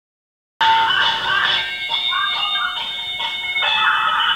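Music that starts suddenly about half a second in. It sounds thin and tinny, with little bass.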